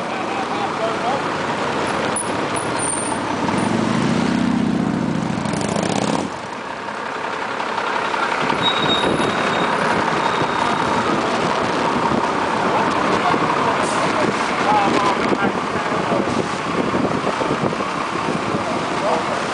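City street traffic noise with the chatter of passers-by. A low engine drone rises for a couple of seconds about 3 to 4 seconds in and cuts off suddenly around 6 seconds in.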